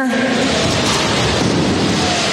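Steady, loud noisy rumble and hiss of a robot combat arena during a fight, with no distinct hammer impacts standing out.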